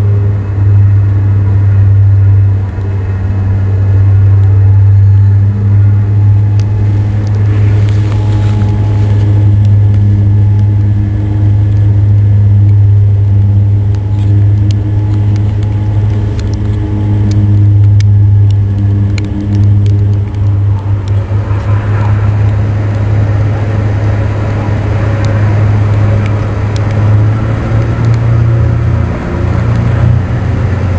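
MV Loch Alainn's diesel engines running steadily, a loud low drone heard from the ferry's deck, with a scatter of faint clicks through the middle.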